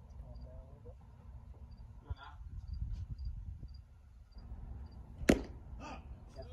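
A single sharp pop a little over five seconds in: a pitched baseball smacking into the catcher's mitt, with a smaller knock just after. Faint distant voices come and go beneath it.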